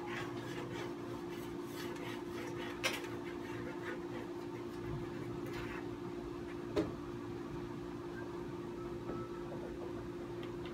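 Ski's steel edges being scraped by hand with an edge scraper: faint rasping strokes along the ski, with two sharp clicks about three and seven seconds in, over a steady low hum.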